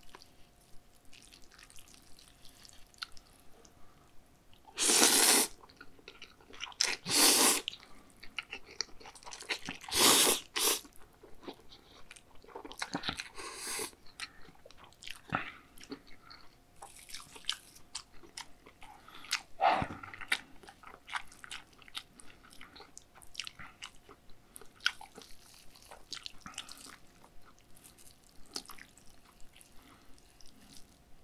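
Close-miked eating of spicy cold noodles (bibim-myeon) with Korean raw beef: three loud slurps of the noodles about five, seven and ten seconds in, then wet chewing with many small clicks and smacks.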